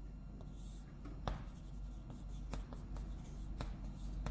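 Chalk writing on a blackboard: a series of short scratches and taps as strokes are drawn.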